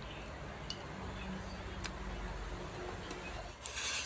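Quiet eating and fruit-handling sounds at a table, with the scaly skin of rattan fruit being peeled: a few faint clicks and a short hiss near the end.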